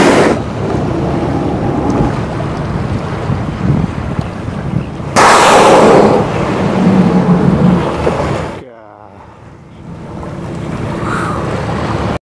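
Wind and water noise on a small boat's microphone, with a blue whale's blow about five seconds in: a loud, sudden whoosh of breath lasting under a second. About three seconds later the sound drops to a quieter hiss.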